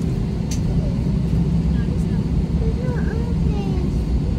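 Steady low rumble inside an airliner cabin as the plane moves, from its engines and the aircraft rolling. There is a single light click about half a second in.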